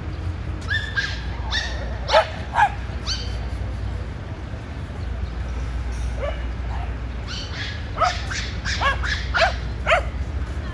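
Small dogs barking and yipping in play: high-pitched yaps, a run of them in the first three seconds and another cluster near the end, with a lone yip in between.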